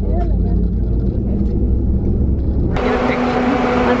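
Low rumble of a coach's engine heard from inside its cabin, with a faint voice. About three seconds in it cuts suddenly to a steady hum with one held low tone.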